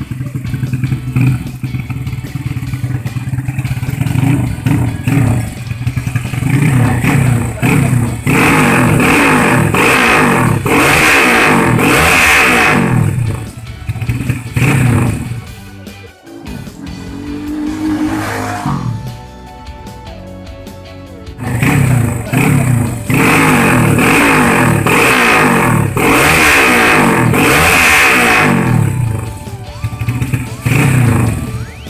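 Honda Astrea motorcycle's single-cylinder four-stroke engine, built with a 67.9 mm stroke and 52.4 mm piston, revved up and down again and again in quick throttle blips. The revving drops away for a few seconds past the middle, then resumes.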